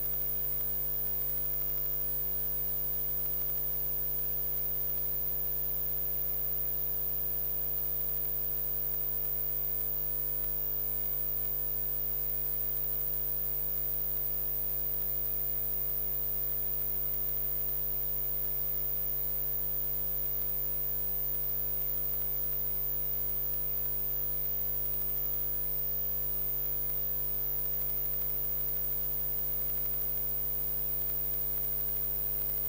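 Steady electrical mains hum on the meeting room's microphone feed, with no other sound. A faint high whistle sits above it and drops out for several seconds partway through.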